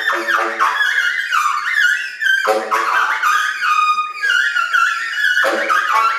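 Unaccompanied tenor saxophone improvising: fast runs of high notes with bright, rough overtones, dropping to low notes about two and a half seconds in and again near the end.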